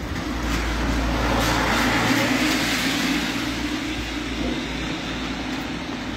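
A vehicle passing close by on a wet street: engine rumble and tyre hiss that swell over the first two seconds and then slowly ease off.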